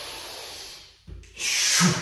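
A man breathing hard through a kettlebell lateral lunge and clean: a long hissing breath, a brief low thud about a second in, then a sharp forceful exhale with a short grunt as he pops the kettlebell up into the clean.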